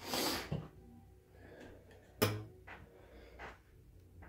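Small handling noises at a soldering bench: a short breathy rustle at the start, one sharp tap about two seconds in, and a few fainter clicks.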